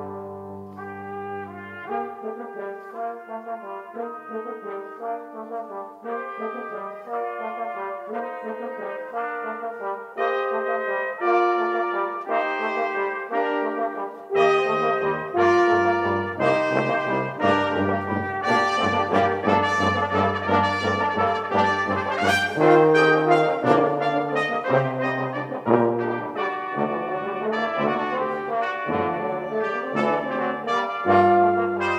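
Brass quintet of trumpets, trombone, a small horn and tuba playing a piece together. The tuba drops out about two seconds in and comes back about halfway through, and the music grows louder from there.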